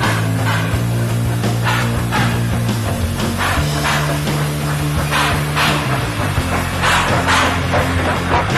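Instrumental hard rock: distorted electric guitar chords over bass, changing every second or so, with a steady drum beat of snare hits about twice a second.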